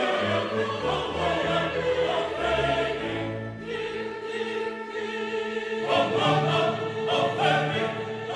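Mixed choir of men and women singing a classical Christmas piece with orchestral accompaniment, in long held chords that grow fuller and busier about six seconds in.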